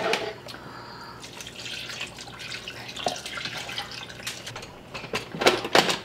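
Chicken broth poured from a glass measuring cup into a blender jar of cooked butternut squash, a steady trickling pour. Near the end come a few sharp plastic clicks as the blender lid is fitted on.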